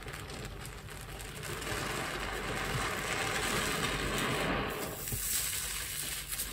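A soft grout sponge soaked in dish-soap suds being pressed and squeezed under water, giving a wet squelching and fizzing of foam. It swells from about a second and a half in and eases off near the end.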